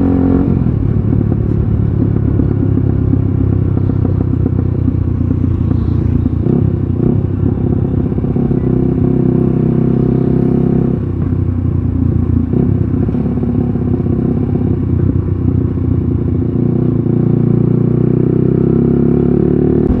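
Motorcycle engine running under way on the road. Its note drops about eleven seconds in, then climbs again near the end as the bike picks up speed.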